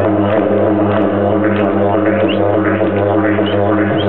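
Didgeridoo played solo: an unbroken low drone with steady overtones, the player's mouth shaping rising overtone sweeps about two or three times a second.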